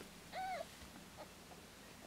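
A Himalayan cat gives a single short mew about half a second in, its pitch rising and then falling; the rest is quiet.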